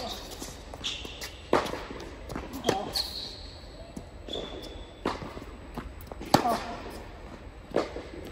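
Tennis rally on an indoor hard court: racquets striking the ball and the ball bouncing, a sharp crack every second or so, each echoing in the hall. Short high squeaks of tennis shoes on the court come between the hits.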